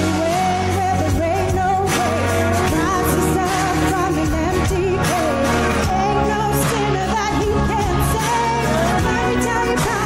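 A woman singing a worship song into a microphone, her voice wavering with vibrato, over an instrumental accompaniment with a bass line and a steady beat.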